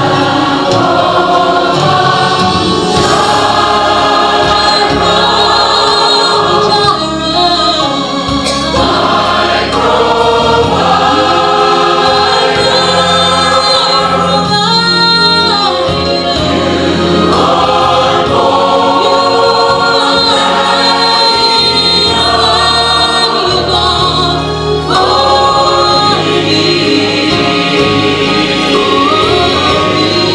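Church choir singing a gospel song with musical accompaniment, loud and continuous.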